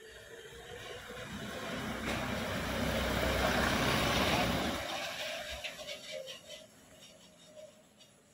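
Mahindra Bolero police SUV driving past close by: its engine and tyre noise build up, are loudest about three to four and a half seconds in, then drop off quickly as it moves away.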